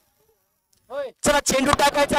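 About a second of near quiet, then a man's voice: a short drawn-out vocal sound rising and falling in pitch, followed by rapid commentary-style speech from about halfway in.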